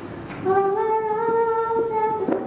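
A girl singing unaccompanied. After a short breath she holds one long, steady note, starting about half a second in.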